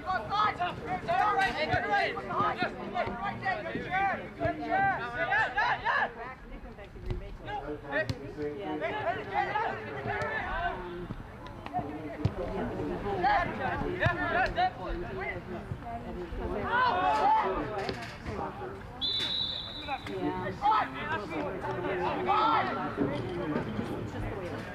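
Unintelligible voices of players and people on the sidelines shouting and calling out across a soccer field, with general chatter. A short, steady, high tone sounds about 19 seconds in.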